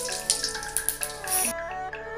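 Whole dried red chillies, bay leaf and cumin seeds sizzling and crackling in hot oil in an aluminium karai; the sizzle cuts off about one and a half seconds in. Background music plays throughout.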